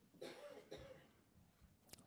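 A person clearing their throat faintly, a short voiced rasp in two quick parts about a quarter second in.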